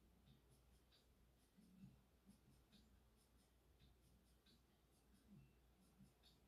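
Near silence: quiet room tone with a few faint, scattered ticks.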